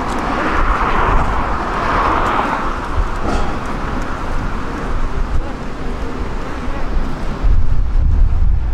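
Road traffic on a busy multi-lane road: a steady hiss of passing cars and tyres, with one vehicle swelling loudest in the first three seconds, and a low rumble underneath.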